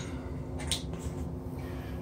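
A few faint, short scrapes of a small hand tool drawn along a soft bead of Bondo body filler in the joint between the tub and the tile wall, with a low steady hum underneath.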